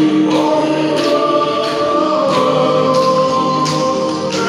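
A choir of mixed voices singing a song in harmony, with long held notes that shift pitch and a light sharp accent about once a second.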